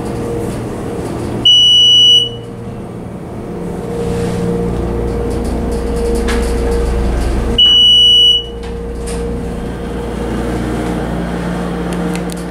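Electronic chime of a 1997 United States SoftTouch hydraulic elevator, sounding twice about six seconds apart: each a single steady high beep under a second long. Under it runs the steady low hum of the car moving up on its submersible hydraulic pump.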